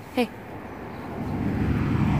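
A motor vehicle approaching, its noise growing steadily louder.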